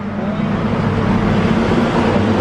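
A machine running nearby with a steady low hum under a broad noisy wash.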